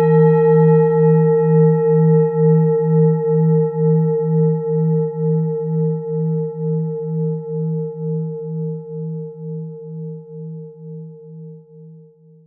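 Singing bowl ringing on after a single strike. Its low tone wavers in a slow pulse, about two and a half beats a second, and it fades gradually until it has nearly died away at the end.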